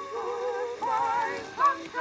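Singing from a 1920 acoustic-era gramophone record: a female singer with chorus, the voices carrying a wide vibrato, with a brief louder note swelling near the end.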